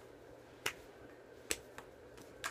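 Finger snaps: two sharp snaps a little under a second apart, then a fainter one just after.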